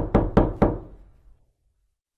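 A quick run of four or five sharp knocks or clicks, each with a short ringing tail, dying away within the first second, then dead silence.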